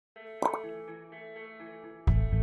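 Short intro jingle: a pop sound effect about half a second in, over soft held musical tones.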